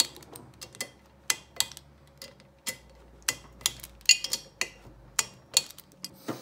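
Socket wrench ratchet clicking in irregular runs of sharp ticks while tightening the cylinder head bolts of a Mercury 3.3hp two-stroke outboard powerhead.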